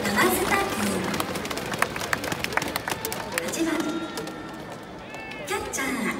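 Baseball stadium crowd noise, with scattered claps and the PA announcer's voice echoing around the stands.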